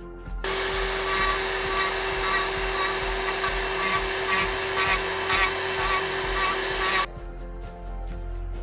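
Rotary carving tool with a cone-tip burr grinding into wood: a steady whine under the rasp of the cutting. It starts about half a second in and cuts off suddenly about a second before the end.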